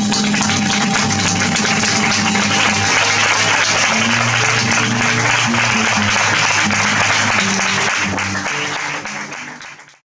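Audience applauding over flamenco guitar notes that play on beneath the clapping. Both fade out over the last second and a half.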